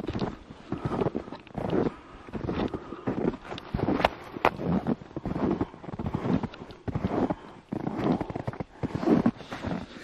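Footsteps crunching through deep snow at a steady walking pace, about two steps a second, with two sharper clicks about four seconds in.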